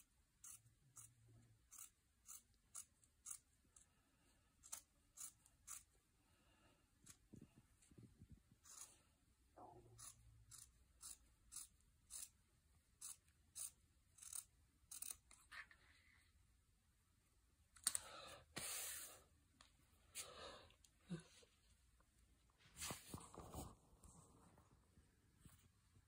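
Faint snipping of scissors cutting through folded fabric, short crisp snips at about two a second at first, then more irregular. A few louder swishes come in the second half.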